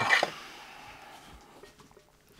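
A brief rustle and clatter of handling as a part is set down on a shelf. It fades quickly into faint workshop room tone with a few small clicks.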